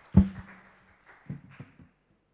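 Thin audience applause trailing off, with one loud thump on the microphone with a brief low hum after it about a quarter second in; the sound cuts off abruptly just before the end.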